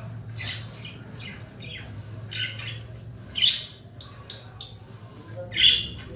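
Birds calling in short, harsh chirps and squawks, about six separate calls spaced irregularly, over a steady low hum.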